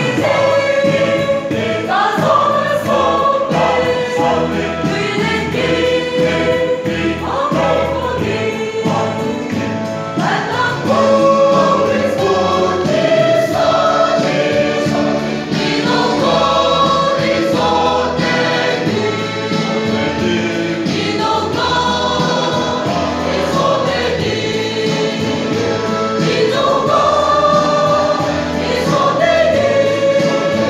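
Mixed choir of men and women singing a hymn together, continuous and steady for the whole stretch with held notes.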